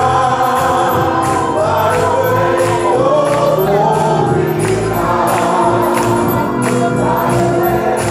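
Gospel music: voices singing over a steady beat, with a sharp stroke about twice a second.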